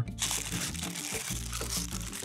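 Paper fudge wrapper crinkling and rustling as it is unfolded from a slab of fudge in a cardboard box, under background music.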